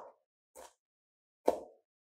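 Kitchen knife chopping chilies on a plastic cutting board. A faint chop comes about half a second in, and a sharper knock of the blade on the board comes about a second and a half in.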